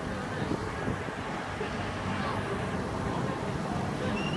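Funfair ambience: a large swinging pendulum ride running, with a steady low mechanical noise and faint voices in the background.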